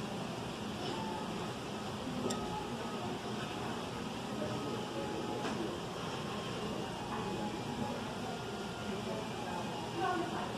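Restaurant dining-room background: indistinct voices of other diners over a steady ventilation hum, with a couple of faint clicks.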